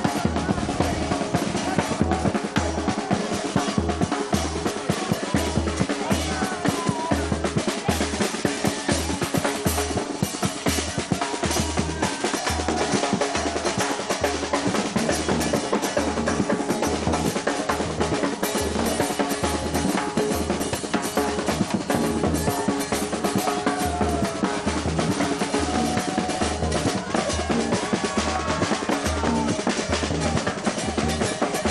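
A murga percussion section plays a steady marching beat: the deep beats of a bombo bass drum under dense snare-drum strokes.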